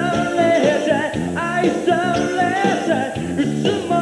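Male vocalist singing a pop song backed by a live band of bass guitar, drums and keyboards.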